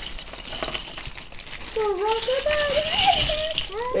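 Small plastic LEGO minifigure parts clicking and clattering inside clear plastic zip bags, with the bags crinkling as hands rummage through them. The clatter is busiest through the middle, where a wordless voice sound runs alongside it.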